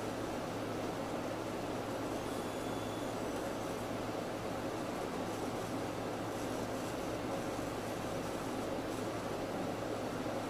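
Steady, unbroken noise with a low hum and no speech: the sound feed's own noise during a technical glitch in the audio.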